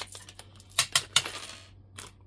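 Small hard charms clicking and clinking against each other and their clear plastic packet as they are handled. A quick run of sharp clinks, the loudest a little under and a little over a second in.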